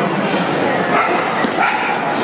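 A dog yipping and barking repeatedly, with people talking underneath.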